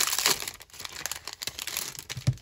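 Sticker sheets, one of them clear plastic, crinkling and rustling as hands handle them and slide them apart. The rustle is loudest near the start.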